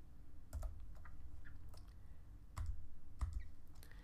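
Computer keyboard typing: a few scattered keystrokes with irregular pauses between them.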